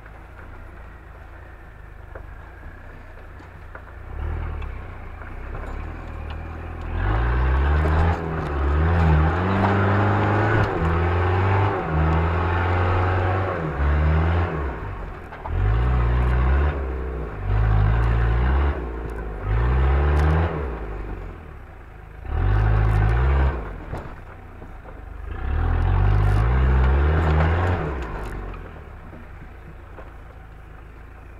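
Off-road 4x4's engine running, then revving hard in repeated surges of throttle about seven seconds in, as the vehicle works its way up a steep dirt slope. The engine drops back to a quieter run between the surges.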